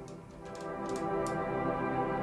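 Warm sustained guitar pad from the Guitars in Space Kontakt library's Guitar Pad preset: a held chord of steady tones that dips briefly and swells back up about half a second in. A few faint ticks sit over it.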